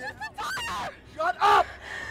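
A frightened young woman's voice, gasping and tearful as she pleads. There are two short strained outbursts, the second and louder one about a second and a half in.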